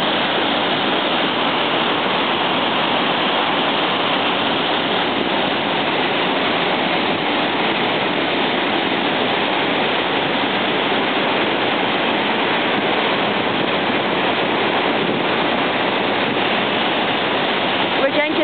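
The River Braan's Black Linn Falls in spate: a steady, loud rush of white water pouring down through a rocky gorge, unchanging throughout.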